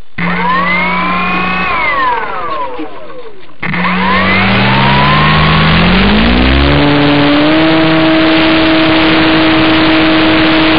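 Electric motor and propeller of an E-flite Beaver RC model plane, heard close up from the plane itself. A whine rises and falls once and breaks off suddenly, then climbs steadily in pitch over a few seconds and holds at full throttle for the takeoff, under a steady rush of propeller wash.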